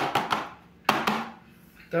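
A clear plastic tray full of freshly poured liquid soap knocked down twice on a stone counter, two sharp knocks just under a second apart, to settle the soap and drive out trapped air.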